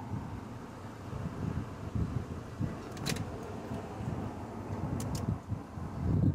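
The 2002 Acura MDX's 3.5-litre V6 running at idle, a low steady rumble, with a few light clicks about three seconds in and again near five seconds.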